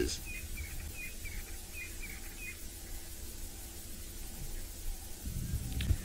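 A bird chirping in a quick run of short, repeated high notes that stops about two and a half seconds in, over a low steady hum and rumble.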